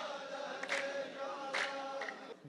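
A row of men chanting a poet's verse together in a long, drawn-out unison tone, clapping in time, with three sharp claps at a steady beat of a little under one a second.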